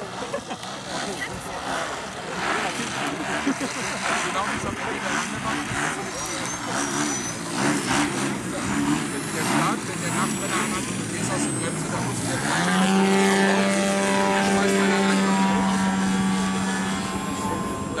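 Engine and propeller of a radio-controlled Extra 330SC aerobatic model plane, fluctuating during a low pass. About twelve and a half seconds in, the engine opens up with a quick rise in pitch and then holds a loud, steady high tone at full throttle as the plane climbs vertically.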